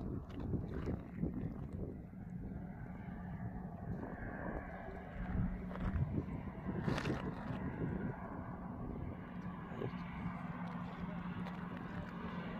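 Outdoor wind noise on the microphone, with a steady low vehicle hum coming in about halfway through and a single brief knock around the middle.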